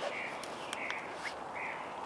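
Quiet woodland background at dusk with a bird repeating a short call about every half second; a small click near the middle.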